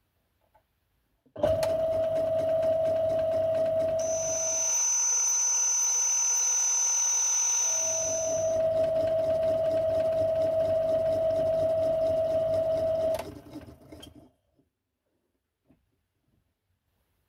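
Small benchtop metal lathe switched on and running with a steady hum, turning a copper boiler tubeplate disc while the tool takes light, intermittent cuts. For a few seconds in the middle the sound is sped up into a high whine, then drops back to the normal hum, and near the end the lathe is switched off and runs down.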